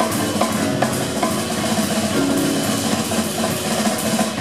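Live jazz quintet playing, with the drum kit to the fore: a steady wash of cymbals and drum hits over double bass and piano.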